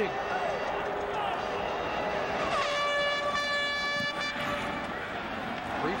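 Stadium crowd noise, with one horn note blown in the stands about two and a half seconds in: it slides up briefly, then holds steady for under two seconds before stopping.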